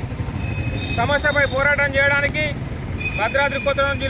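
A man speaking in Telugu, starting about a second in, with a brief pause just before the end, over a steady low rumble.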